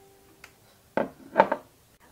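A held background-music note fades out, then two short knocks about a second in, half a second apart.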